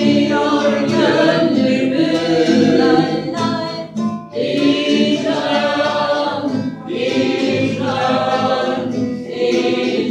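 A group of adult voices singing a Turkish song together in phrases, with short breaks between phrases about four and seven seconds in.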